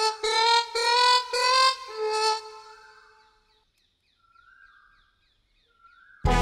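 Background music: a single melodic instrument plays a run of short notes climbing in pitch, then dies away about halfway through, leaving only faint high chirps.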